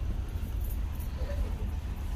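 Steady low rumble under faint background noise of a store aisle, with no distinct event standing out.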